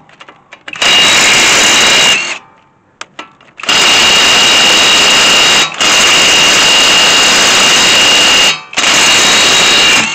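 The smallest of Einhell's cordless impact wrenches hammering at a very tight van wheel nut in four long bursts, the trigger released briefly between them, with a steady high whine running through the hammering.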